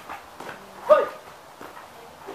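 A single short, loud yelp falling in pitch about a second in, with a few faint knocks around it.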